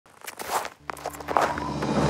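A few short, noisy crunching or swishing sounds in quick succession, joined a little under a second in by a low sustained music drone.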